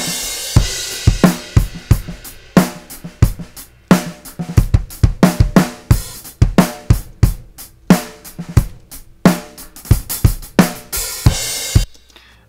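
Playback of a recorded acoustic drum kit playing a steady groove of kick, snare and hi-hat, the close mics blended with an AEA R88 stereo ribbon room mic. A cymbal wash rings at the start and again near the end, and the playback stops suddenly just before the end.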